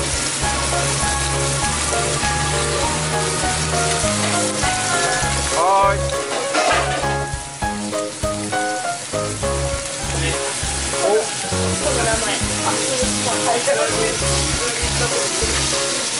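Whole sea bass pan-frying in hot oil in a skillet, a steady sizzle, with background music underneath.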